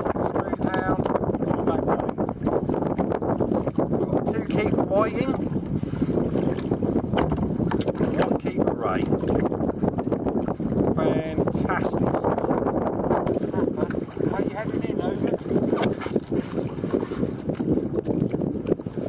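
Wind buffeting the microphone on open sea, with choppy water slapping against a kayak, a steady rough rush with constant small knocks and crackles.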